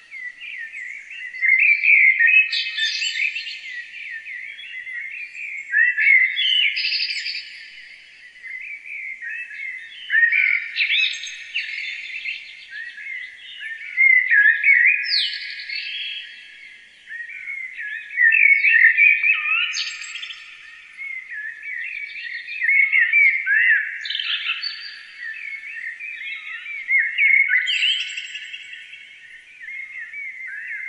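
Songbirds singing: many overlapping high chirps and whistled phrases, swelling every four seconds or so, with nothing low beneath them.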